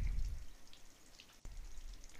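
Water trickling and dripping out of an open Delta shower mixing valve body with its cartridge removed, faint, with a single sharp click about a second and a half in.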